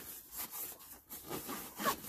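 Nylon backpack fabric rustling and rubbing as hands rummage inside the pack, in a few scraping strokes, the loudest near the end.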